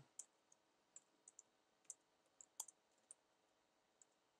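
Faint typing on a computer keyboard: about ten short, irregularly spaced keystroke clicks.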